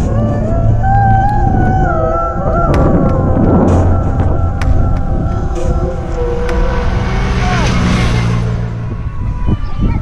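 Heavy low rumble of wind on the microphone of a moving bicycle, with a wavering melodic line of held, gliding notes over it.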